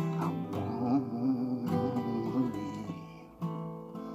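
Acoustic guitar strumming chords, moving from A minor to G, with a man's voice holding a wavering sung note over them in the middle. A fresh strum comes in about three and a half seconds in.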